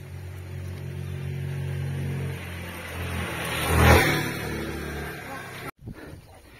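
A motor vehicle passing on the road: a steady engine hum that builds into a loud rush of engine and tyre noise about four seconds in, then fades and cuts off abruptly near the end.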